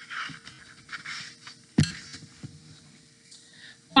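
Rustling of a paperback picture book's pages as it is handled and turned, with a sharp knock a little under two seconds in and a softer one shortly after.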